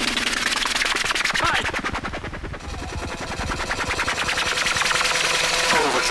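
Hard dance music played live through a club sound system, in a passage of rapid, evenly repeated drum hits; the level dips about two seconds in, then climbs steadily again.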